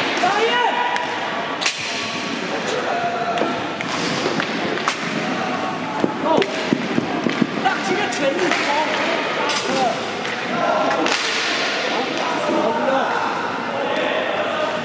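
Inline hockey play on a wooden floor: hockey sticks clacking against the puck and the floor, with several sharp clacks and thuds against the rink boards.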